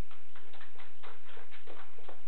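Light, scattered hand clapping from a small audience: separate claps at about five or six a second, uneven rather than a full round of applause, over a steady electrical hum.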